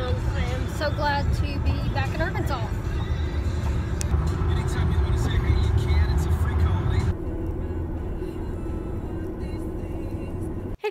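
Steady low road and engine rumble inside a moving car's cabin, with music playing over it and a voice singing or talking through the first few seconds.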